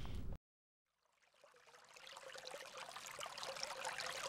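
Outdoor sound cuts off abruptly near the start, leaving about a second of dead silence. Then a trickling, water-like noise fades in and grows steadily louder.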